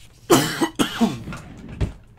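A man coughing twice, two harsh coughs about half a second apart, part of a recurring cough, followed by a short low thump near the end.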